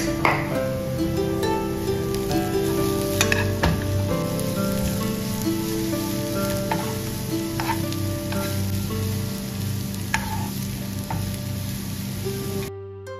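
Julienned carrots, raisins and almonds sizzling as they fry in a nonstick pan with sugar, stirred with a spoon that clicks now and then against the pan. Soft background music plays over it.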